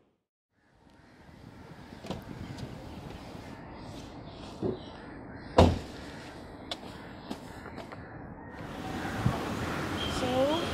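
Quiet car-interior background with a few scattered clicks and knocks and one louder thump a little past halfway, like a car door or seat being bumped. It starts after a moment of silence.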